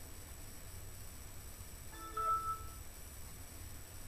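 A short electronic chime of a few clear notes from the laptop's speakers, about two seconds in and lasting under a second, as the Windows desktop finishes loading. A faint low hum runs beneath it.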